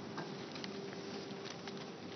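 Quiet room sound of a large cathedral with scattered soft clicks and shuffles of footsteps and movement on the stone floor, over a faint steady hum.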